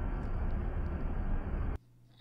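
Steady outdoor background rumble, muffled and without any clear events, from street footage; it cuts off suddenly near the end.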